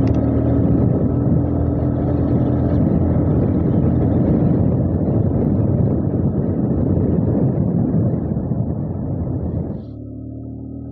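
Motorcycle ridden at speed on the open road: the engine running steadily under a heavy rush of wind on the microphone. The noise eases a little after about eight seconds and drops off sharply just before the end.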